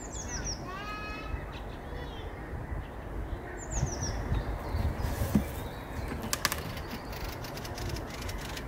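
A small songbird singing short phrases of quickly falling notes, one at the start and a briefer one about four seconds in, over a steady low rumbling noise. A few sharp clicks come a little after six seconds.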